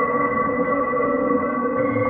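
Dark ambient synthesizer drone: several sustained tones held steady together, with no beat.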